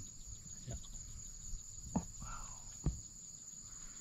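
Steady, high-pitched chorus of insects in the grass and scrub, with a couple of faint short knocks.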